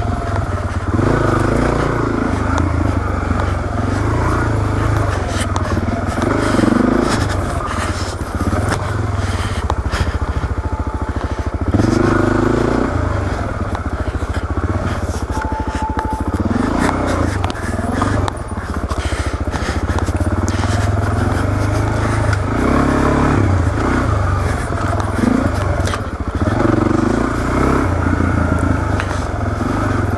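Suzuki DR-Z400S single-cylinder four-stroke engine pulling along a dirt trail, the revs rising and falling again and again with the throttle.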